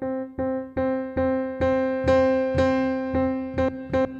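AIR Music Technology Stage Piano, a sampled Yamaha C7 grand played from a hammer-action keyboard, repeating a single note near middle C about two to three times a second, quicker near the end. The release is set to 0–20 ms, so each note stops short when the key is let go.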